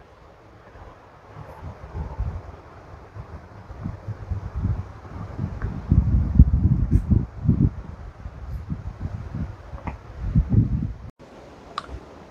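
Wind buffeting the microphone in irregular low gusts, heaviest around the middle, cutting off suddenly shortly before the end.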